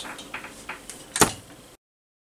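A few light clicks and one sharper knock just over a second in, then the sound cuts out abruptly into dead silence.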